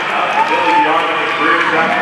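Speech: a man talking, announcer-style, with only the words "of the" clear near the end.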